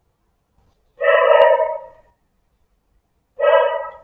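Two loud calls from an animal, each with a clear pitch: a longer one about a second in and a shorter one near the end.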